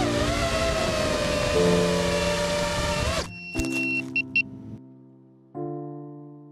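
The motors of a 5-inch FPV quadcopter whine, their pitch wavering with the throttle, under background music. A little past three seconds the motor sound cuts off. A few short musical hits follow, then sustained piano chords begin near the end.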